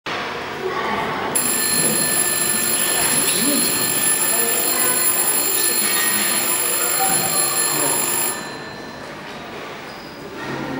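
People's voices in a large, echoing hall, overlaid from about a second in by a steady high-pitched electronic whine that cuts off suddenly near the end.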